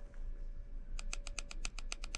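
Physical navigation buttons of a Yiben P47L e-reader clicking in quick succession as a menu is scrolled, about ten clicks a second, starting about a second in.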